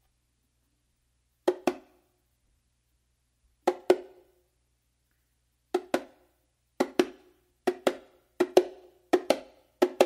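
Bongo slaps played as quick double hits, two slaps in rapid succession in a flam-like pattern. About eight pairs, the first ones spaced about two seconds apart, the later ones coming faster toward the end.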